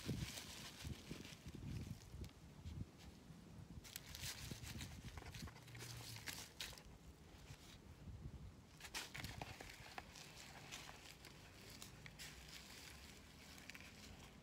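Gloved hands digging into and pressing potting soil in plastic nursery pots: faint, irregular rustles and scrapes, with one sharp knock right at the start.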